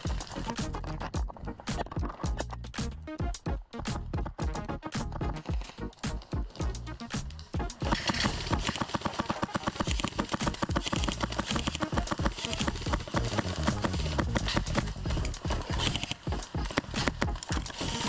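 Airsoft guns firing strings of rapid shots in covering fire, the clicks getting louder and faster about halfway through, with background music playing.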